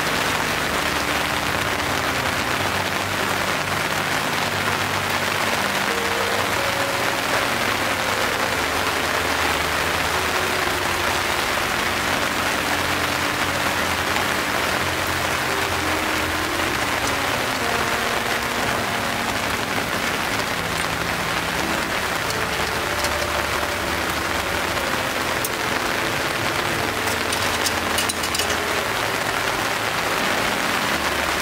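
Steady rain, an even unbroken hiss.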